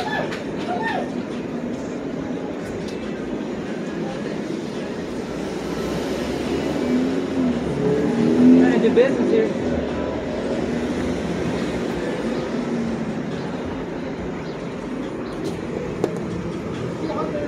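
Steady city street noise, a traffic hum, with indistinct voices that swell briefly about seven to nine seconds in.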